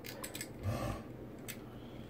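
Light clicks and taps from handling an electrical wall outlet (receptacle) and its wires: a few quick clicks at the start, a short faint low sound a little under a second in, and one more click about halfway through.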